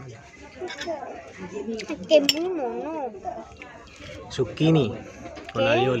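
Sharp clinks of cutlery on dishes at a table. About two seconds in comes a pitched vocal call that wavers up and down, with shorter calls later on.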